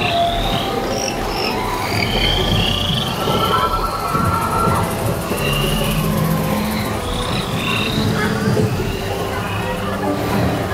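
Na'vi River Journey's piped rainforest soundscape: many short chirping creature calls and frog-like croaks over a low steady ambient hum.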